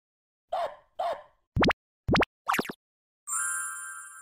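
Cartoon-style intro sound effects: two short plops, two quick rising whistle-like glides, a brief wobbly blip, then a ringing chime of several steady tones that holds and slowly fades.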